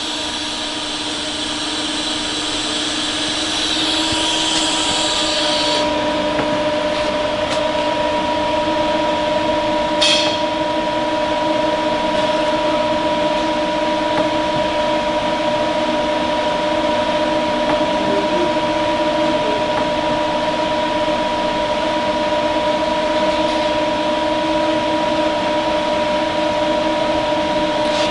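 Steady machine hum with a few steady tones and no welding arc. A higher hiss stops about six seconds in, and a single click comes about ten seconds in.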